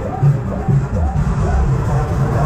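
Loud fairground ride music with a pulsing bass beat.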